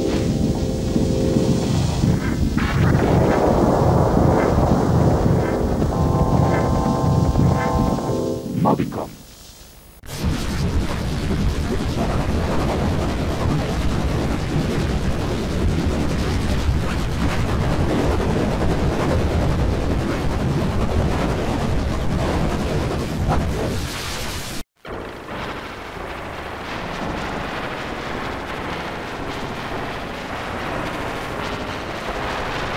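Effect-processed soundtrack of a 1998 Mobicom TV commercial. For about the first nine seconds it is synthesizer music with held chord tones. From about ten seconds it becomes a harsh, noisy, distorted version, broken by a brief dropout near the end.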